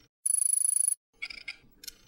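Synthetic sound effects of an animated logo reveal. A high, rapidly fluttering electronic ring lasts under a second, then a few short, bright chime-like blips follow.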